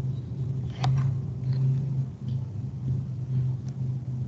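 A steady low hum picked up by an open microphone, with a few faint clicks, one about a second in and another near the end.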